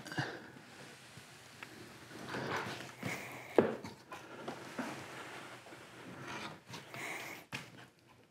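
A man breathing hard and straining while he pushes a heavy fully rigged kayak onto a wooden caster cart. The hull scrapes and knocks against the cart, with one sharper knock about three and a half seconds in.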